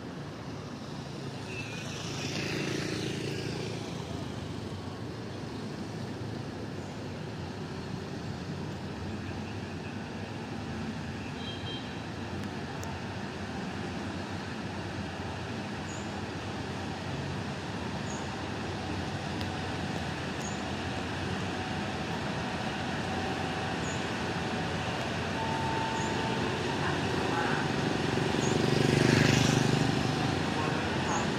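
Kiha 183 diesel railcar approaching along the platform track, its engine and wheel rumble building steadily and loudest just before the end as it draws near.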